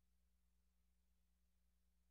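Near silence: only a faint, steady low hum.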